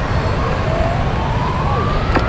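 Electronic sound effect from a Lighthouse prize redemption arcade game: a single tone that starts about two-thirds of a second in and rises slowly and steadily in pitch. It plays over the steady low din of a busy arcade.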